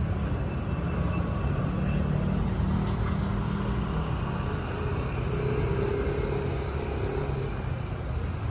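Steady low rumble of road traffic and vehicle engines in a busy street area.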